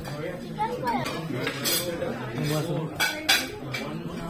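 Metal spoons clinking against ceramic plates and steel serving bowls during a meal, with a few sharp clinks in the second half, over a murmur of voices.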